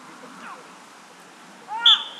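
Near the end, a short, loud cry from a player, followed at once by a short, shrill blast on the referee's whistle: the whistle for a foul, as two players go down.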